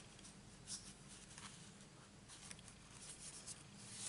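Near silence, with a few faint ticks and rustles of card stock being handled and lined up by hand.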